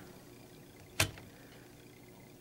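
A single short, sharp click about halfway through, over faint room tone.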